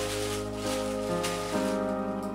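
Background music with long held notes, over tissue paper crinkling as it is pulled out of a gift bag, easing off about one and a half seconds in.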